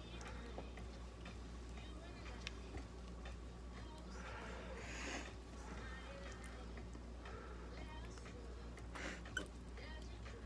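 Faint scattered clicks of metal surgical instruments over a steady low hum, with quiet murmured voices and a brief rustle near the middle.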